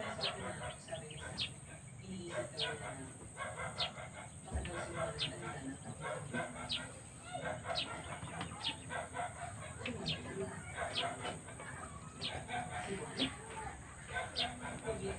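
Birds calling: many short, sharp chirps falling in pitch, a second or less apart, among lower, shorter calls, over a steady high-pitched hum.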